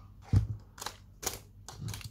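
Handling noise on a cluttered craft table as a plastic squeeze bottle of glue is picked up and moved: a dull thump about a third of a second in, then a few sharp clicks and taps.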